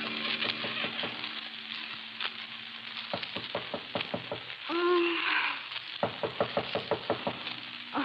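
Rapid knocking on a door in two runs of about seven knocks each, with a brief murmuring voice between them, over the steady hiss and crackle of an old 1940s radio recording.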